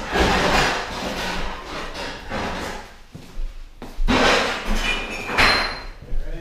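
Trash and loose items being gathered off a wooden floor: rustling and scraping in two long spells, the second starting about four seconds in.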